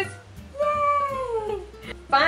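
A single drawn-out meow, about a second long, falling in pitch toward its end, over quiet background music.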